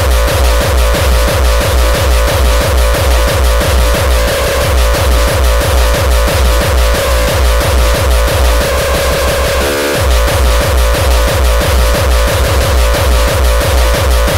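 Hardcore gabber track: a fast kick drum pulsing steadily under a dense, noisy electronic layer, with a brief break in the kick just before ten seconds in.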